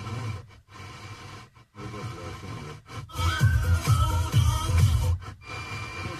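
FM radio in scan mode, playing short snatches of one station after another with brief silent gaps as it retunes; music with a pulsing beat comes through from about three seconds in.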